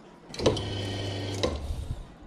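Paddle-operated espresso machine flushing its group head: the pump hums and water sprays for about a second, opening and cutting off with a click, then a short low rumble as it settles.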